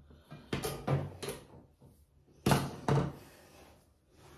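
Handling knocks from a curling iron being unwound from the hair and set down: a few light knocks and rustles, then two sharper thuds about half a second apart near the middle.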